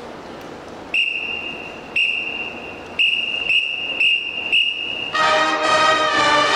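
A whistle counts the band off: two long blasts a second apart, then four short ones about half a second apart. Just after 5 seconds the full marching band comes in with a loud brass chord.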